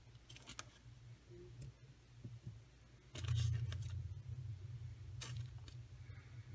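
Faint clicks and rustles of hands handling a small plastic-fronted shaker card, a few separate touches, the loudest about three seconds in.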